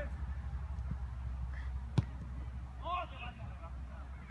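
A football kicked with one sharp thud about two seconds in, followed about a second later by a short shout from a player.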